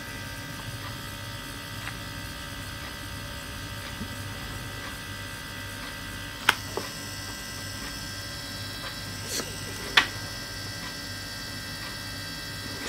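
Polaroid Z2300 instant camera's built-in ZINK printer running while it prints a photo: a steady electric hum and whine from the print mechanism, broken by a couple of short clicks.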